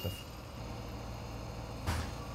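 Steady low mechanical hum of machinery at a road-works site, with a short sharp burst of noise near the end.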